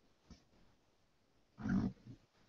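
A faint click, then near the end a short, low vocal grunt or murmur from a man as he searches.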